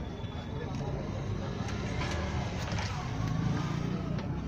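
Steady low rumble of background traffic with indistinct voices and a few light clicks.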